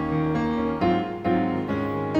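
Instrumental music led by piano, with new chords struck about every half second: the introduction of a children's worship song, before any singing.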